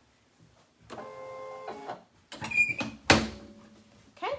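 Clamshell heat press being closed down onto a towel for a pre-press. A short steady mechanical whir and some rattling lead up to a sharp metallic clunk about three seconds in, which rings briefly as the press locks shut.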